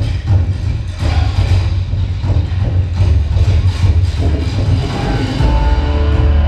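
Loud yosakoi dance music with a heavy, driving bass beat; about five and a half seconds in, long held notes come in over the beat.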